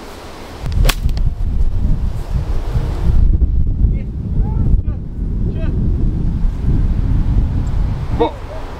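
A golf iron striking the ball out of long rough: one sharp crack about a second in. It is followed by loud wind buffeting on the microphone.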